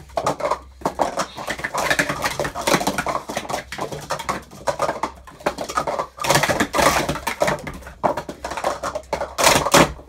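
Rapid clatter of plastic sport-stacking cups as two stackers race through a cycle side by side, cups clicking down onto the wooden table and nesting into one another. Louder rushes of sliding cups come about six seconds in and again near the end.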